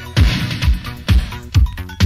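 Electronic dance music from a DJ mix, driven by a steady kick drum at about two beats a second.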